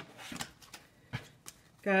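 A deck of tarot cards handled and shuffled by hand: a few soft, scattered card taps and flicks.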